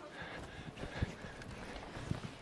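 Faint footsteps on a stage floor: a few soft, irregular thuds, the loudest about a second in, over quiet room hiss.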